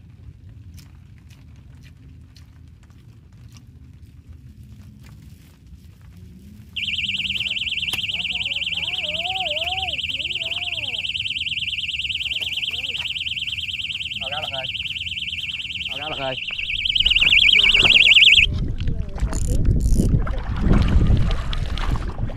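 Electronic fishing bite alarm going off with a continuous high, rapidly pulsing beep for about eleven seconds, starting about seven seconds in: a fish has taken the bait and is pulling line. It cuts off near the end, followed by loud rustling and handling noise.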